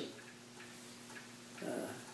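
Quiet room with a faint steady hum and faint ticks about once a second. A man says a hesitant 'uh' near the end.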